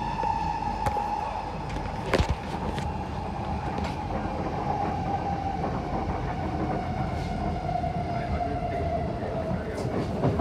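Inside an SMRT C151B train, the traction motors whine steadily over the rumble of wheels on rail. The whine slowly drops in pitch as the train slows to stop at the station. A few sharp clacks from the track cross it, the loudest about two seconds in.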